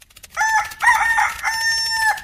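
A rooster crowing once: a pitched call in three parts, the last note held longest, lasting about a second and a half.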